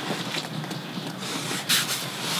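Rustling and scraping of a cardboard box with a plastic bag on top being lifted and pushed onto a bunk, with a brief sharper rustle near the end.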